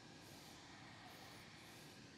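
Near silence: only a faint steady background hiss.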